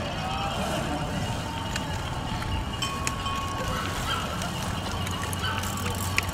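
Cyclocross race-side crowd ambience: spectators' voices mixing with the ringing of bells and scattered sharp clicks, while bikes ride past through sand.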